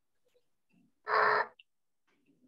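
Silence broken about a second in by a single short, steady-pitched voice sound lasting about half a second, heard over a video call.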